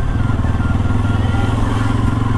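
Bajaj Pulsar NS200's single-cylinder engine running steadily at low road speed, its pitch holding level with no revving.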